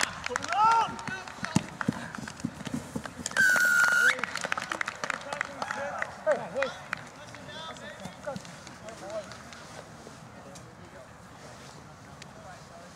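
A referee's whistle blown once, a steady shrill blast of under a second, about three and a half seconds in. Around it are players' shouts and the patter of running feet on grass.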